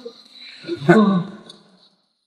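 A man's wordless voice: a drawn-out groan that falls in pitch about a second in, with no words spoken.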